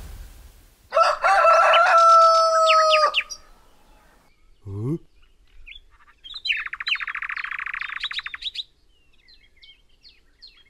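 Cartoon sound effects: a loud held two-tone note with twittering chirps for about two seconds, a short rising glide near the middle, then a fast chirping trill and small bird-like tweets. These are the cartoon tweeting of a character knocked dazed.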